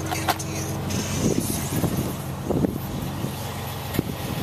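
A steady low mechanical hum under faint outdoor background noise.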